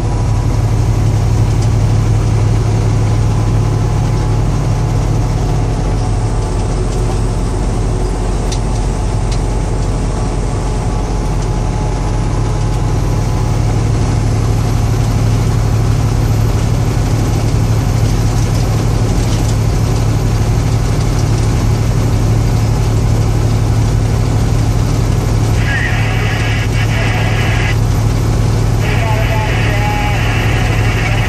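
Inside the cab of a large vehicle cruising on the highway: a steady low engine hum under constant road and wind noise.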